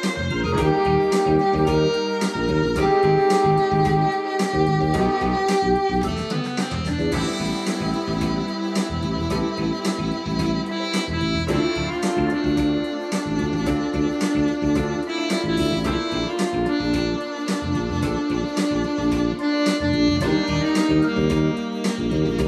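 Yamaha Electone two-manual electronic organ playing a jazz arrangement, with held melody and chord notes over a steady drum beat.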